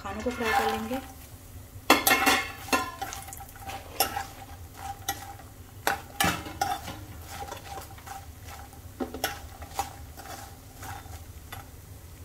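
Makhana (fox nuts) tipped into a nonstick pan of hot ghee with a clatter about two seconds in, then roasted while a spatula stirs and scrapes them. The spatula knocks on the pan about once a second over a light sizzle.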